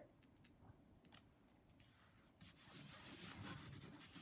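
Faint rustle of cardstock handled and pressed flat by hand, sliding against paper. Near silence with a few light ticks at first, then the rustling starts a little past halfway.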